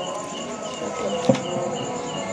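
A cricket chirping steadily in short high chirps, about four a second. A single sharp click sounds a little past the middle.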